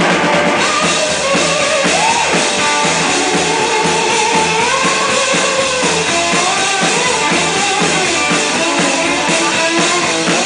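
Live band music: an electric slide guitar plays gliding lines that slide up and down in pitch over a steady drum-kit beat.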